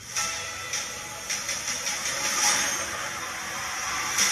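Movie trailer soundtrack: a steady, hissing wash of music and sound effects with no dialogue.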